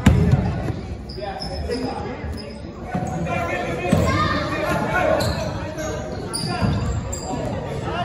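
Basketball being dribbled on a hardwood gym floor during a game, a series of low thuds with short high squeaks, echoing in a large hall.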